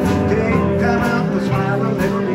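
Live band playing an instrumental stretch between sung lines: electric guitar, upright bass and drums, with a harmonica played into a microphone.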